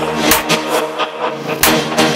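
Breakcore track: sharp, irregular drum hits over a steady, low droning tone.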